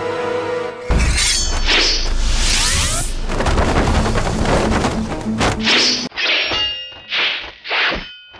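Tense drama music that cuts off abruptly about a second in, replaced by loud film fight sound effects: a dense stretch of impacts and crashing noise, then a string of short, sharp swishes of strikes and blows, one every half second to a second.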